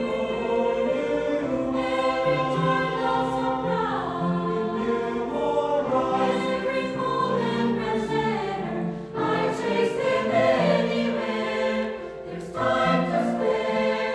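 Mixed choir of men's and women's voices singing sustained chords in several parts, moving from chord to chord, with brief breaks between phrases about two-thirds of the way through and again near the end.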